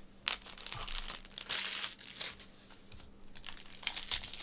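Foil wrapper of a Bowman's Best baseball card pack crinkling and tearing as it is opened by hand, in a few bursts, loudest from about one and a half to two and a half seconds in.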